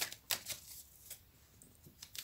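Tarot cards being handled as a card is drawn from the deck: a few faint, short rustles and flicks of card stock, mostly in the first half second and again near the end.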